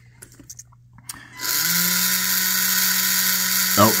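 Small electric ballast pump motor in an RC submarine's watertight cylinder starting up about a second and a half in, rising briefly in pitch as it spins up, then running steadily. The battery and link monitor has gone into failsafe mode and is running the pump to blow ballast.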